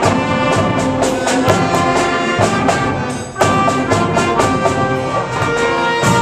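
School concert band playing, with trumpets and trombones to the fore. The music drops out briefly about three seconds in, and a new passage starts.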